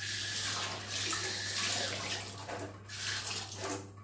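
Kitchen tap running into a sink, water splashing steadily. It starts suddenly, dips briefly about three seconds in, and stops just before the end.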